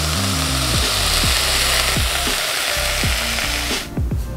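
Broccoli sizzling in a frying pan, a steady hiss that cuts off just before the end. Background music with a bass beat plays under it.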